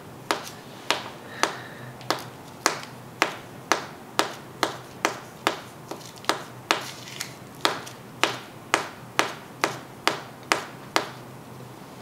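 Repeated sharp taps of a filled paper cone being knocked down against a plate to pack it, about two taps a second. The taps stop about a second before the end.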